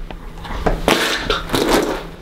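A person drinking from a plastic bottle: a run of gulps, swallows and wet mouth noises with several sharp clicks, starting about half a second in.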